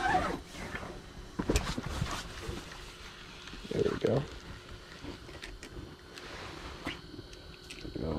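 Scattered small clicks and rustles from handling a spinning rod and reel, with a laugh trailing off at the start and a short voiced sound about four seconds in.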